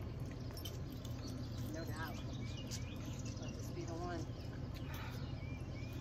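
Outdoor ambience: a steady low rumble with a few faint, short bird chirps and faint, indistinct voices.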